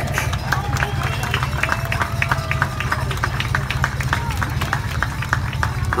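Scattered applause: a few people clapping unevenly, with faint crowd voices over a steady low rumble.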